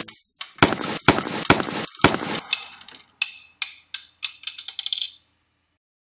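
Gunshot-style sound effects: a few sharp metallic clacks with a high ring, then a spent brass cartridge case bouncing and tinkling on a hard surface, its bounces coming faster until it settles and cuts off about five seconds in.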